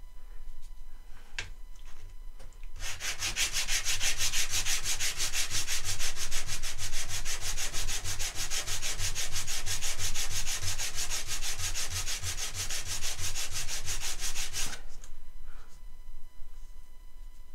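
A small wooden block being sanded by hand on a flat sandpaper board: rapid, even back-and-forth strokes of wood on sandpaper. It starts about three seconds in and stops about a second before the end.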